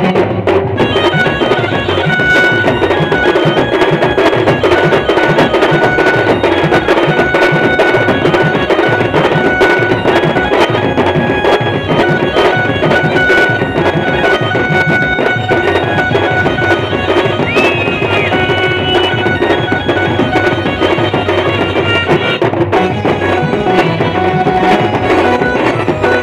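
Live Adivasi village band music, loud and continuous: held wind-instrument melody notes over fast, dense drumming.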